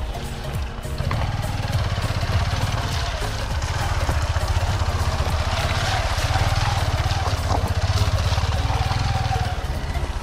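Hero XPulse single-cylinder motorcycle engine running steadily as the bike is ridden through mud, with background music playing over it.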